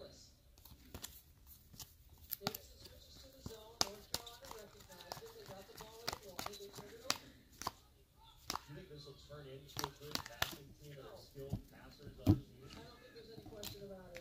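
Glossy basketball trading cards being flipped through and slid against one another by hand: irregular light clicks and ticks of card edges, with a sharper knock near the end.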